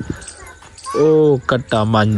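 A man's voice calling out twice, 'o, o', starting about a second in.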